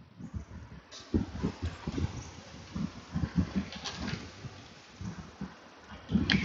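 Irregular soft knocks and bumps with a couple of sharper clicks, from hands handling a plastic engine-oil bottle and a plastic bag on a wooden workbench.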